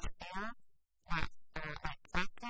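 Speech only: a person talking, with a brief pause about a second in.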